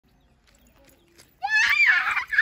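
A small child's loud, high-pitched excited shout, starting suddenly about one and a half seconds in after near quiet, the pitch swooping up and down.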